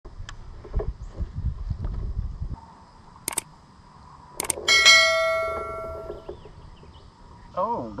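Subscribe-button sound effect: two sharp clicks about a second apart, then a bright bell chime, the loudest sound, that rings and fades out over about a second and a half.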